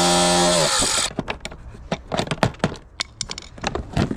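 Angle grinder cutting through rusted metal fixings with a steady whine and hiss; it is released about half a second in, its pitch falls as it winds down, and it has stopped by about a second in. Then a run of light knocks and clatters as the loosened plastic parts are handled.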